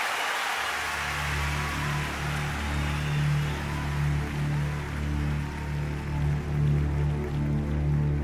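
Arena crowd noise fading away as a low, sustained keyboard chord comes in about a second in and holds, pulsing gently in volume.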